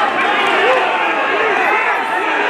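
Fight crowd shouting, many voices calling out over one another without a break.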